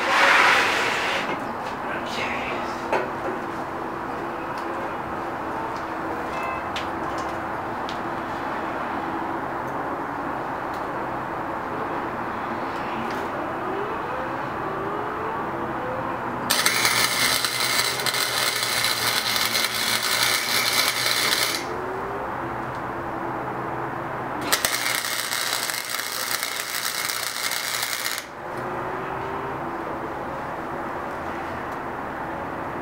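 Wire-feed welder arc crackling in two bursts, the first about five seconds long and the second about three and a half, as diagonal support braces are tack welded onto a steel-tube go-kart frame.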